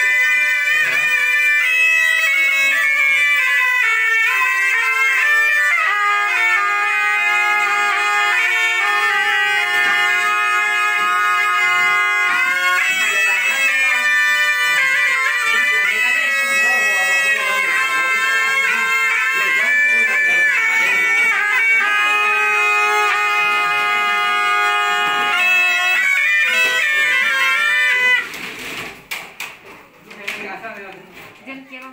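Shrill double-reed horn music, the kind played at Dao ritual ceremonies. The notes are held and step up and down through a melody, and the playing stops abruptly near the end.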